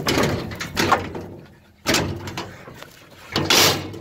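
Metal stock-trailer gate clanking and rattling as it is swung and shut: a few separate knocks, then a longer rattle near the end.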